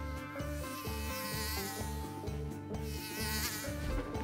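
A housefly buzzing past in two wavering passes, about a second in and again near the end, over background music with a steady repeating bass line.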